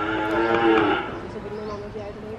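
A single drawn-out call, about a second long, holding one pitch and growing louder before it stops.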